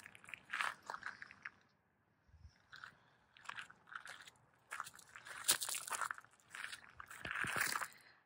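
Footsteps crunching on loose gravel, irregular steps with a short pause about two seconds in.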